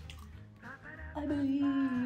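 Background music with a low, steady bass line. About a second in, a woman's voice comes in singing long, slowly sliding notes.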